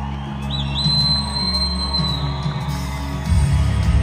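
Live band music in a concert hall: sustained low synth and bass chords with a high held tone that slides up and holds through the first half; a heavier bass part comes in near the end.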